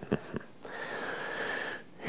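A man takes a long breath in through his nose, a sniff lasting about a second, after a couple of small mouth clicks.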